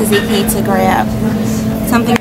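Restaurant background: indistinct voices in short phrases over a steady low hum, with a few light clicks.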